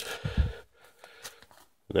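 A man's voice trails off in the first half-second. Then come faint handling sounds as rigid plastic comic-book slabs are shifted about in a cardboard box.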